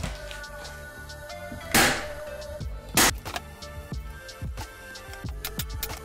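Background music, with two loud snaps of a hand staple gun firing staples into a folded canvas corner, a little over a second apart.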